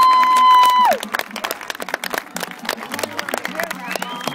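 Stadium crowd applauding in answer to a call for a big hand. A loud, long whoop slides up, holds one pitch for about a second and a half, then drops away about a second in, and scattered clapping carries on after it.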